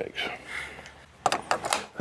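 A short clatter of sharp clicks about a second and a quarter in, from handling the ammunition and bolt-action rifle at the bench, after a soft rustle.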